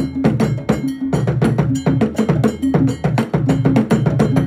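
Traditional Ghanaian drum ensemble of tall carved drums played with bare hands and curved sticks, beating a fast, steady rhythm. Sharp, bright stick strikes ride over repeating low drum notes.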